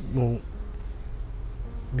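A man's voice speaks a short phrase right at the start. After that comes a pause filled with a low, steady buzzing hum.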